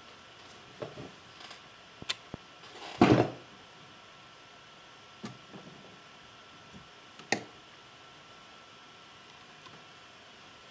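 Handling noises from a Toslink optical cable being plugged into a Mac's audio port: a few sharp clicks and small knocks, with one louder thump about three seconds in.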